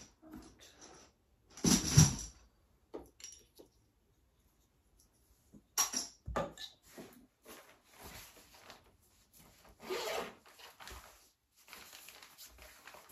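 Toys and household clutter being picked up and moved by hand: irregular rustling, rubbing and knocks with short pauses between, the loudest about two seconds in.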